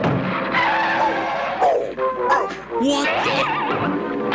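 Cartoon background music score, with wavering, sliding pitched tones in the second half.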